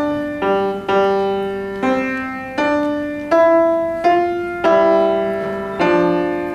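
Grotrian grand piano played slowly: a run of chords, about one and a half a second, each struck and left to ring and fade before the next.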